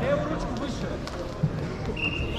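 Echoing ambience of a large sports hall with distant voices, and a single dull thump about one and a half seconds in.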